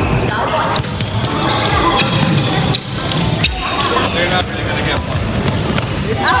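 A basketball bouncing repeatedly on a hardwood gym floor during a pickup game, with players' voices and calls.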